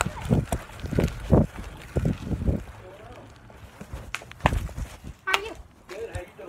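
Handling noise from a phone jostled against clothing: irregular thumps and rubbing, a sharp knock about four and a half seconds in, and brief snatches of voices.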